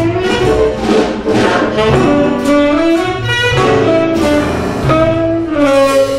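Small jazz combo playing: a saxophone carries a moving melodic line over upright bass, piano and drums.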